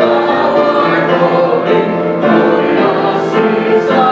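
Church choir of men and women singing together, sustained sung notes throughout.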